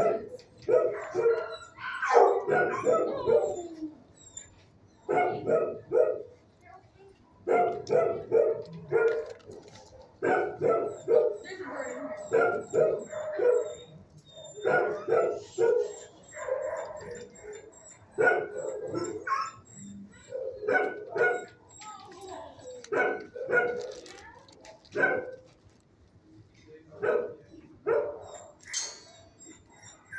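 Dogs in a shelter's kennels barking repeatedly, in irregular clusters of short barks with brief pauses between them.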